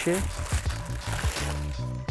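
Shoe-box tissue paper rustling and crinkling as it is handled and lifted out, over a background music track with a steady bass line.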